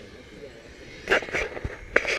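Low outdoor background with a few short, hissy speech sounds about a second in and again near the end; no RC car is heard running.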